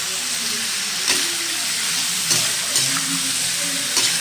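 Pork pieces sizzling as they fry in oil in a pan, stirred with a spatula that scrapes across the pan a few times.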